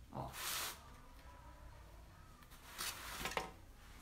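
Quiet room with faint handling noises from hands working at a craft table: a short hiss just after the start, then light rustling and a small tap about three seconds in.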